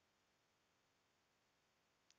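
Near silence: a pause in the narration with only faint background hiss.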